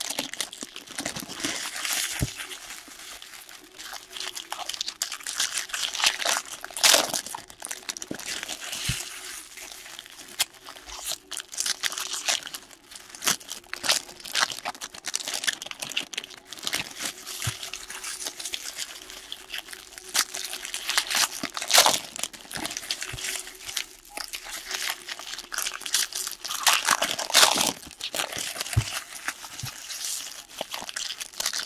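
Foil wrappers of Bowman baseball card packs crinkling and tearing as they are opened by hand, along with cards being handled. The sound is irregular and crackly, with a few louder crinkles along the way.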